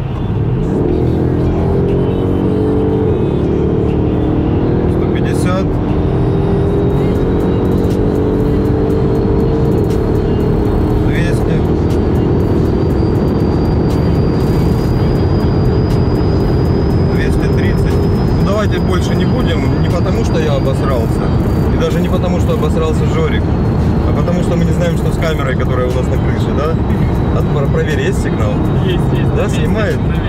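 Mercedes-AMG GLS 63's 5.5-litre twin-turbo V8 under sustained hard acceleration from 100 km/h to over 200 km/h, heard inside the cabin. The engine note climbs steadily over the first dozen seconds, then blends into a steady mix of engine, wind and road noise at high speed.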